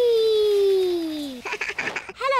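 A young girl's cartoon voice calling one long, slowly falling "wheee" while sledding downhill, then a short breathy laugh near the end.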